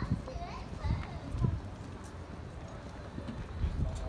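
Voices of passers-by, including children, with short pitched calls in the first second and a half, over irregular low rumbling outdoor noise.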